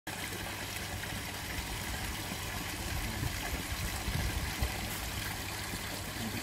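Steady trickling of water into a garden pond, with a few low rumbles in the middle.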